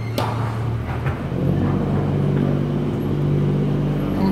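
The engine of a ride-through cave tour tram runs steadily, its pitch stepping up about a second in as it pulls ahead. There is one sharp click near the start.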